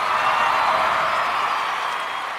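Audience applauding and cheering, a dense wash of clapping that begins to die away near the end.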